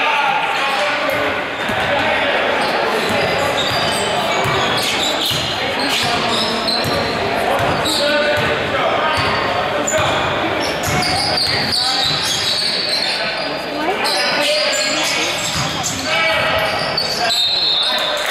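A basketball bouncing and being dribbled on a hardwood gym floor, the knocks echoing in the large hall, under steady talking from players and spectators.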